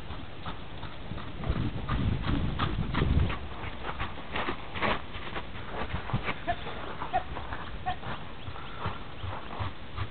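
Hoofbeats of a two-year-old Friesian paint cross horse moving around: an irregular run of hoof strikes, heaviest and deepest between about one and a half and three seconds in.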